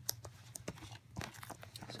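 A plastic Blu-ray case being handled and freed from its packaging: faint rustling and scraping with a few light clicks.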